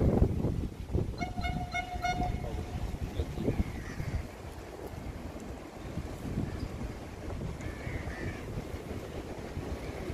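An MRT train horn sounds once from the depot: one steady high note, about a second and a half long, starting about a second in. Low gusty rumble from wind on the microphone runs underneath, loudest at the very start.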